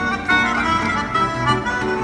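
Melodica (pianica) playing the melody over a nylon-string classical guitar accompaniment in an instrumental passage of a bossa nova tune.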